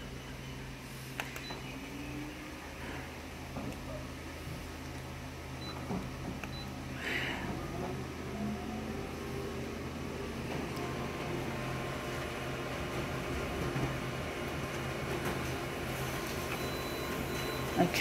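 Office colour laser multifunction copier running a single full-colour copy: a steady machine hum that grows gradually louder, with a few clicks along the way, as the sheet is fed through and printed.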